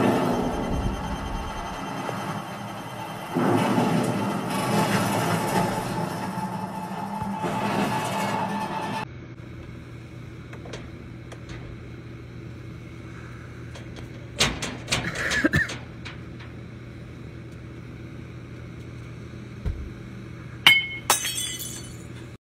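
A film soundtrack with music playing from a television for about nine seconds. After a quieter stretch with a few knocks, cups smash with a sharp crack and a brief ringing near the end.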